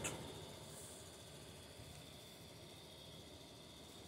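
Near silence: faint room tone with a steady high-pitched hiss.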